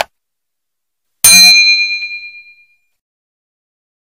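A short click at the very start, then a single bright bell-like ding about a second in that rings out and fades over a second and a half: the sound effects of a subscribe-button animation, a mouse click and a notification bell.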